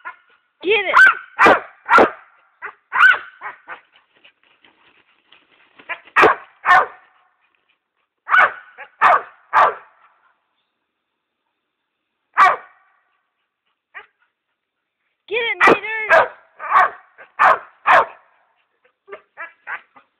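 Dog barking excitedly at a vine hanging out of reach in a tree. The barks come in quick clusters of two to four, with pauses of a few seconds between them and a longer pause around the middle.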